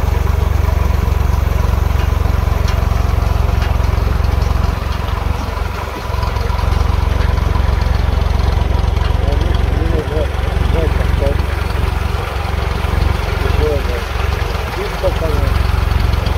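A small tractor's engine runs with a steady, deep drone as it tows a trailer along a rutted dirt track.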